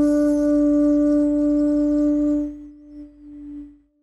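A shakuhachi bamboo flute holds one long low note with audible breath in the tone, which fades about two and a half seconds in and dies away to silence near the end, closing a phrase.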